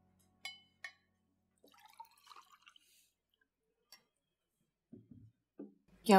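Faint glass clinks, two quick ringing taps just under a second in, then a soft splashing as juice is poured from a jug into a glass.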